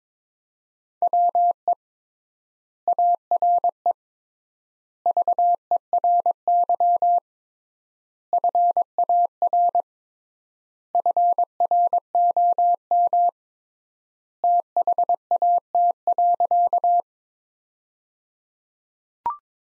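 Computer-generated Morse code at 22 words per minute: a single steady mid-pitched beep keyed in dots and dashes. It comes as six groups separated by pauses of about a second, the widened word spacing, and sends the sentence "we are very far from that."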